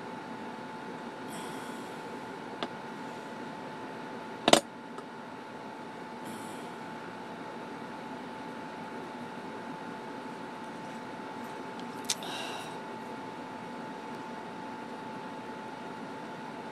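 Steady background hum with a thin steady tone, broken by three sharp clicks. The loudest comes about four and a half seconds in, a smaller one before it, and one with a short rattle after it near twelve seconds.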